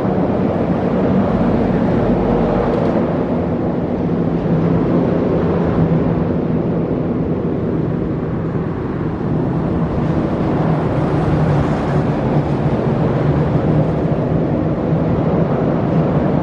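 Steady, loud drone of vehicle traffic with a constant low hum running through it.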